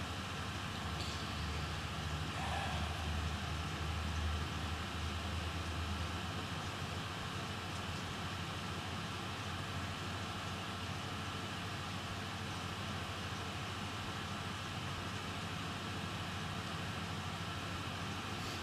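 Steady background hum and hiss of room noise, like a ventilation or air-conditioning fan. A low hum underneath is louder for the first six seconds and then drops away.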